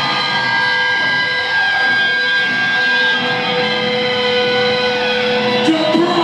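Loud live heavy-metal band: distorted electric guitars holding long, sustained ringing notes that drone steadily, with no clear drum beat until near the end.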